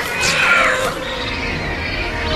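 Film soundtrack: a pteranodon's shrieking cry that falls in pitch about half a second in. Orchestral score and a low rumble run under it.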